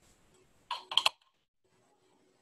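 Three or four sharp hard clicks in quick succession about a second in: a paintbrush knocking against a hard surface.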